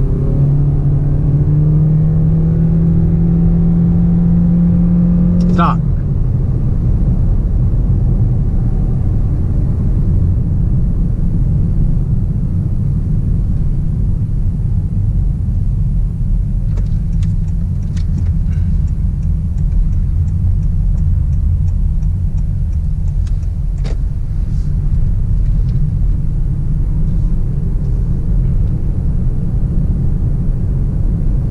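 Honda Clarity accelerating hard in EV mode, heard from inside the cabin: the electric drive whine rises for about six seconds, then cuts off. After that the tyre and road rumble carries on steadily as the car cruises, with faint ticking near the middle.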